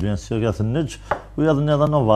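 A man's voice speaking in a studio, with short pauses.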